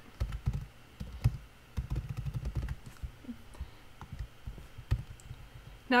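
Typing on a computer keyboard: quick runs of keystrokes in the first three seconds, then sparser taps and a single louder click about five seconds in.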